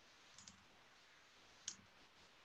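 Near silence broken by a few faint keyboard keystroke clicks: a pair about half a second in and one near the end.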